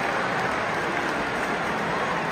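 Steady hubbub of a large football stadium crowd, a dense wash of many voices with no single sound standing out.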